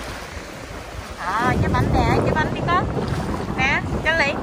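Wind buffeting the microphone, with two runs of short, high-pitched yelps from a small dog, the first about a second and a half in and the second near the end; the dog cries out like this when it sees other dogs.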